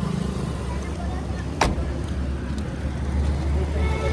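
Low, steady rumble of street traffic, with a single sharp click about one and a half seconds in.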